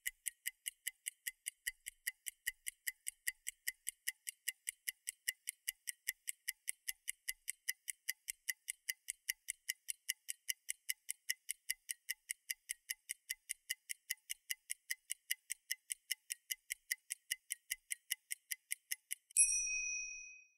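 A clock-ticking timer sound effect: a fast, even tick, about three to four a second, counting down the time allowed for an exercise. It ends near the end with a short bell-like ding marking that time is up.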